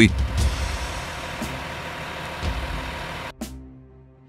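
Truck engine sound running steadily, then cutting off abruptly about three seconds in.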